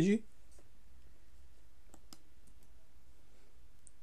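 A few faint, scattered computer clicks over a low steady hum.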